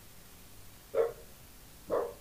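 A dog barking twice, two short barks just under a second apart.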